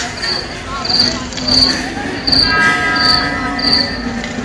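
Cricket chirping, a short high chirp about every two-thirds of a second, six in a row, over a loud, steady fairground din.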